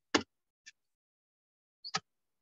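Short, sharp knocks of hands working a wet paper-mache pulp mass on a concrete floor: a loud one just after the start, a faint one shortly after, and a quick double knock at the end.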